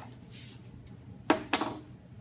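Handling noise from hands working yarn and a laminated paper sheet on a hard bench top: a soft rustle, then two sharp clicks close together about a second and a half in.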